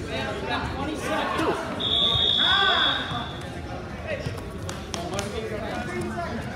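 One steady high-pitched tone lasting about a second and a half, starting about two seconds in, heard over shouting voices.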